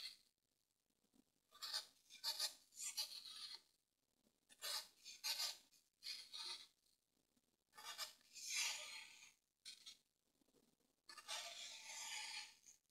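A craft knife blade drawn through a block of dry floral foam in separate strokes, each a crisp scratching crunch with silence between. The longest and loudest cut comes about two-thirds of the way through.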